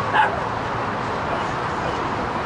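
A single short, sharp yelp about a fifth of a second in, over steady outdoor background noise.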